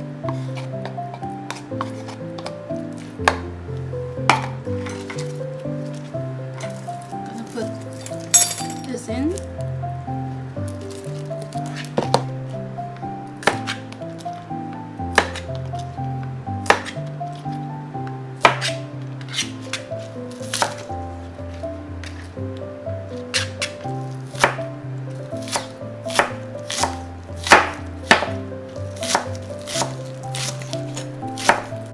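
Background music with a steady melody and bass line, over which a chef's knife chops green onions on a plastic cutting board. The sharp knife strikes come sparsely at first and grow quicker and louder in the second half.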